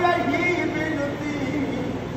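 A man's voice holding a long, slightly wavering sung note at the end of a line of Hindi devotional verse (savaiya) in praise of Bankey Bihari.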